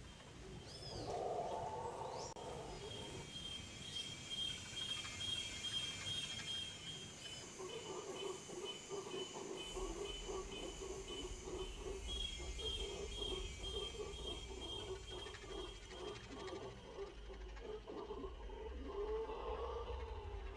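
Tropical forest ambience: a steady high insect trill that breaks into a rhythmic stutter, a few bird chirps early on, and a low pulsing sound underneath through the second half.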